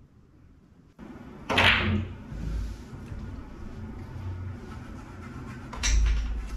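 Pool shot: a sharp click of cue and balls about one and a half seconds in, a low rumble of balls rolling on the cloth, then a heavier knock near the end.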